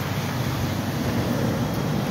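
Steady street noise: a vehicle engine running under an even hiss.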